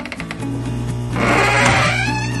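Old wooden gate doors creaking open over background music; the creak grows loud in the second half and swoops up and down in pitch.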